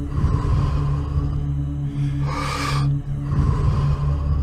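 A man's deep, forceful breathing for breathwork, in and out at a steady pace of about one full breath every three seconds, over a steady low ambient music drone.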